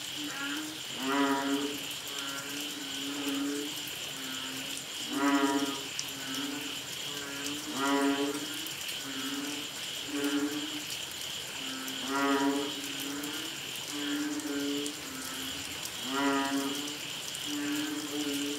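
A chorus of banded bullfrogs (Asian painted frogs, Kaloula pulchra) calling: drawn-out, low, mooing calls, with a loud one about every four seconds and other frogs answering in between. A steady high-pitched drone runs underneath.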